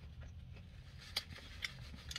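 Quiet mouth sounds of chewing soft tater tots and a few small clicks from a paper wrapper being handled, over a steady low hum of a car's interior.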